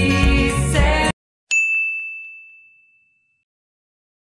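Background music with a beat and singing cuts off suddenly about a second in. Half a second later a single bright ding, an added sound effect set in dead silence, rings out and fades away over about two seconds.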